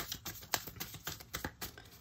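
Tarot cards being handled as one more card is drawn from the deck: a run of light, irregular clicks and taps of card stock.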